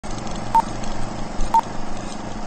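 Film countdown leader beeps: two short, single-pitched beeps a second apart, one per number, over a steady hiss and low hum.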